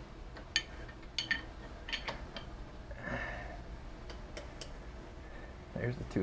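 Scattered light metallic clicks and ticks as a Honda CB750 engine is turned over slowly by hand with a wrench on the crankshaft bolt. The clicks come several close together in the first two seconds and twice more later, with a soft hiss about three seconds in.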